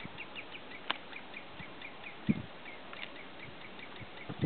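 Common redshanks fighting: a steady run of short, high call notes, about four a second, with a few low thumps and splashes from wing-beats in the water; the loudest thump comes a little past the middle.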